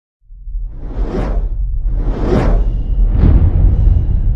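Three whoosh sound effects about a second apart, each swelling and fading, over a deep rumbling bass drone: a cinematic logo-reveal intro sting.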